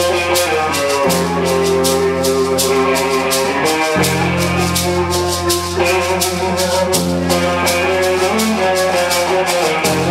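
A band playing live, an instrumental passage without vocals: sustained low chords that change about every three seconds, over a steady, fast percussion tick of about four beats a second.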